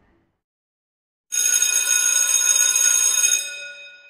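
A bell rings loudly for about two seconds, starting after a second of silence, then fades away.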